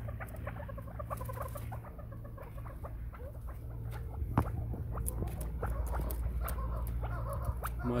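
Young first-cross chukar partridges (chakor) making a stream of short, soft chirps, with scattered light clicks and one sharper knock a little past the middle.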